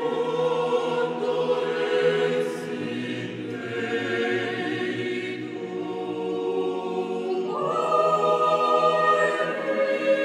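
Mixed SATB choir singing a cappella in slow, sustained chords. About two-thirds of the way through, the upper voices move up to a higher chord and the sound grows louder.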